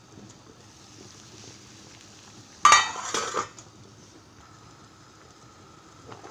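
A stainless-steel pot lid clatters against a steel cooking pot in one short metallic burst about two and a half seconds in. Under it runs a faint steady hiss from the gas burner heating the water.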